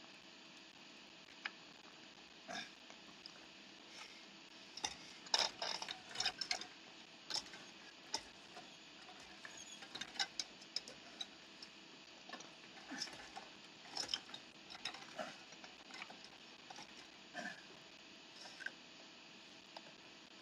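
Irregular small clicks, scrapes and knocks of a metal hairpin being handled on a wooden floor and a wheelchair being moved, over a steady faint hiss. The loudest cluster of clicks comes about five to six seconds in.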